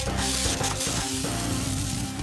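Background music with the steady hiss of a hand-pump pressure sprayer's nozzle misting over it.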